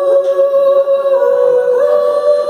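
Live rock band holding sustained, ringing chords with no drums playing, the pitch of the held notes stepping up near the end.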